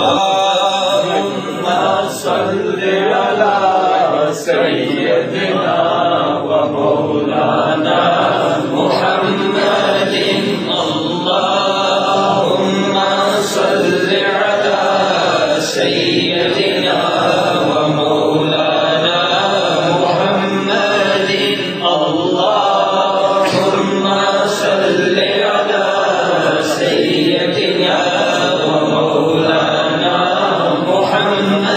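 Sufi zikr chanting: a man's voice repeating a devotional phrase over and over in a steady, repeating rhythm.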